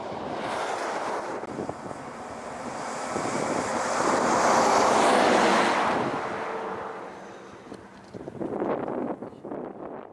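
A truck passing at highway speed: its tyre and wind noise swell to a peak about halfway through and fade away. Wind buffets the microphone, and a shorter rush of noise follows near the end.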